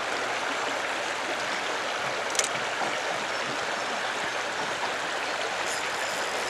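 Steady rush of river water running over a rocky riffle, with one brief click a little over two seconds in.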